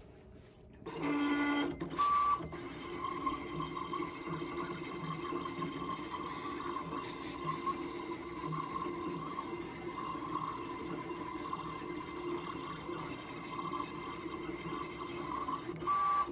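Siser Juliet vinyl cutter cutting out a printed sticker along its contour: a short electronic beep about two seconds in, then the steady whir of its carriage and roller motors as the blade moves across the sheet, with another short beep right at the end.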